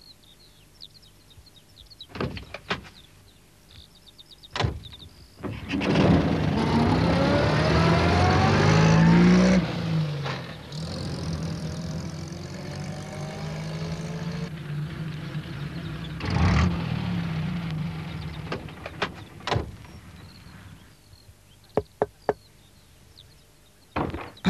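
A small van's door clicking and shutting with a thump, then its engine starting and revving up in rising pitch as it pulls away. The engine then runs steadily before dying away, followed by a few clicks near the end.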